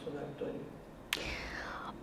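Faint, distant speech from someone off the microphone, then a sharp click about a second in followed by a brief faint falling hiss.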